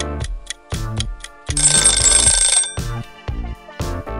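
Upbeat background music with a steady beat. About a second and a half in, a ringing bell sound effect goes off for about a second as the quiz's countdown timer runs out.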